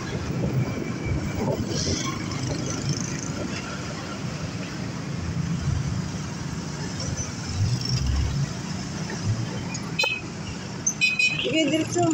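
Motorcycle engine running while riding through city traffic, with road and wind noise and other motorcycles and cars around. A few short higher-pitched sounds come near the end.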